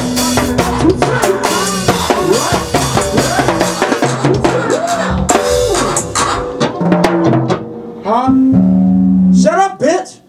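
A live go-go band playing a groove: drum kit with kick, snare and cymbals, and a second percussionist on stick-played drums, with a voice over the music. The music cuts off suddenly at the end.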